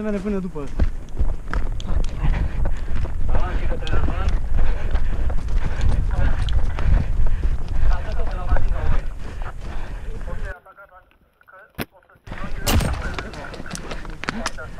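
Footsteps crunching through snow, with wind rumbling on the microphone. About ten and a half seconds in the sound drops out almost completely for under two seconds, broken by a single sharp click, then picks up again.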